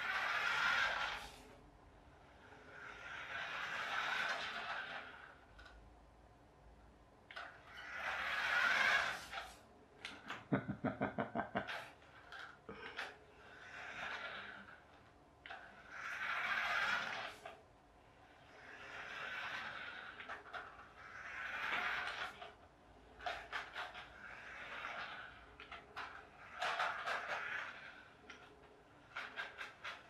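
Radio-controlled toy Formula 1 car's small electric motor whirring with its tyres on a wooden floor, in repeated bursts every two to three seconds as it speeds up and slows. There is a rapid run of clicks about ten seconds in and a few sharp clicks near the end.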